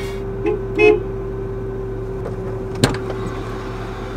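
Car engine idling, heard inside the cabin as a steady low hum with a level tone. Two short pitched sounds come about a second in, the second one loud, and a single sharp click sounds near the three-second mark.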